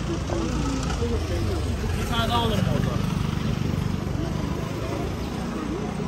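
Busy city street: passers-by talking as they walk by, one voice standing out about two seconds in, over the steady low rumble of car engines and traffic.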